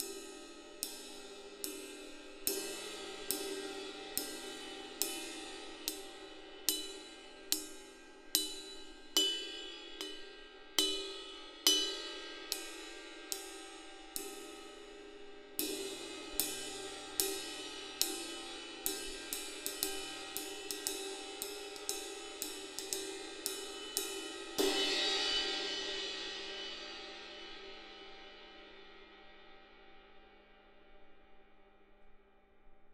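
20-inch Zildjian K Heavy Ride cymbal struck on the bow with a drumstick in steady strokes, a little more than one a second, each with a clear ping over a ringing wash. About halfway through, the strokes quicken to about three a second. A final, harder stroke is then left to ring and slowly fade.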